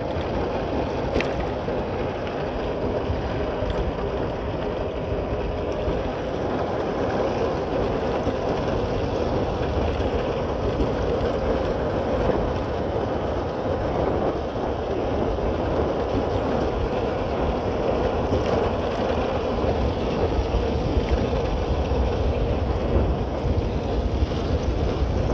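Motorcycle engine running steadily at road speed, with wind rushing over the microphone; the sound grows slightly louder as the bike speeds up.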